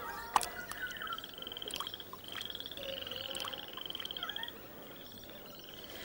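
A frog calling: a rapid pulsing trill repeated several times, each about a second long, with a couple of sharp clicks early on.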